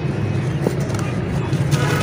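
Dry red dirt crumbling and falling in a plastic tub, with a few soft crackles, over a steady low rumble.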